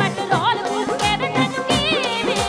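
Live Punjabi band music from a stage: a wavering, vibrato-laden melody line over steady held keyboard notes and a regular drum beat, with no lyrics sung.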